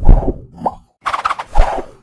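Sound effects for an animated logo intro: a sudden thump at the start, a short rising whistle, then after a brief gap a second burst of sound ending in another thump.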